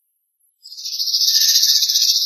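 A high, shimmering jingling trill fades in about half a second in and then holds steady, like a tambourine or jingle-bell roll. It sounds like a dramatic sound effect in the soundtrack.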